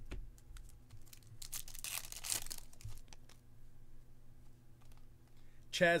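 A stack of glossy baseball cards being slid and flipped one over another in the hands: light clicks of card edges, with a denser rustling swish of card on card for about a second, starting about one and a half seconds in.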